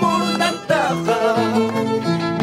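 Violin and Andean harp playing a tune together: the harp plucks a bass line that steps from note to note under the violin's bowed melody.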